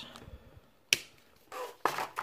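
Plastic highlighter cap being clicked on or off: one sharp click about halfway through, with fainter clicks at the start and near the end.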